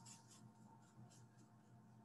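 Faint, quick scratchy strokes of a paintbrush on canvas, a few per second, fading out a little over a second in, over a low steady hum.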